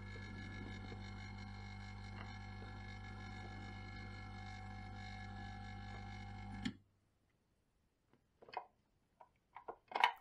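Hot air rework station running with a steady hum of many tones, switched off about two-thirds of the way through with a click that cuts the hum at once. A few faint handling clicks follow.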